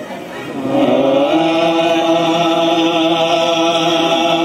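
Male voices chanting a Nagara Naam devotional verse: after a brief lull the voice slides up in pitch about a second in and holds one long steady note.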